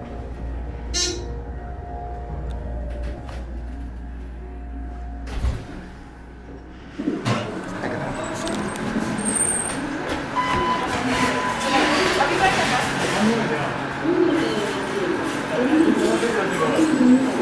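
A ThyssenKrupp elevator car riding with a steady low hum, a short chime about a second in, and a clunk as it stops. About seven seconds in the doors open onto louder store background noise with distant voices.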